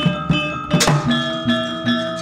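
Javanese gamelan music: struck bronze metallophones ringing sustained tones over regular low drum strokes, with one sharp, loud stroke a little before halfway.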